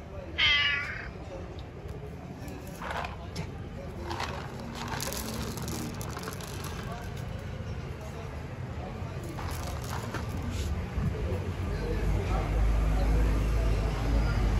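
A cat meows once, a short high cry about half a second in, the loudest sound here. A low rumble builds near the end.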